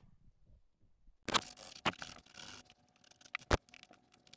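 Handling noise: a stretch of rustling and scraping after about a second of quiet, with a few sharp clicks, the last and loudest about three and a half seconds in.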